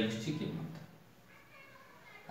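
A man's spoken word trailing off in a drawn-out vowel at the start, then quiet room tone for the rest.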